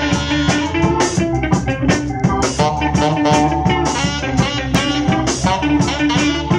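A ska band playing live, with saxophones holding long notes over a steady drum-kit beat.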